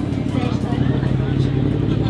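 A motor vehicle's engine running steadily close by, a low hum that settles in about a second in, with voices in the background.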